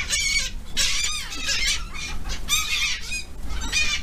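A flock of gulls calling close by: many high-pitched, overlapping squawks repeating one after another while the birds hover for food.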